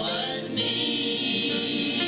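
A small gospel praise team, mostly women's voices with one man, singing together in harmony into handheld microphones with sustained, held notes.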